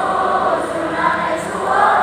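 A large choir of students singing together, holding notes that change every half second or so.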